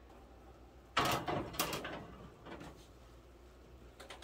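An electric range's oven door pulled open about a second in, followed by shorter clunks and scrapes as a glass baking dish is taken out of the oven.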